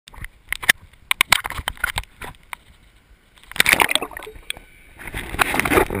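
Sea water sloshing and splashing against a handheld GoPro's waterproof housing at the surface, with many sharp clicks and knocks in the first couple of seconds. Two longer bursts of splashing follow, the second as the camera dips under the water.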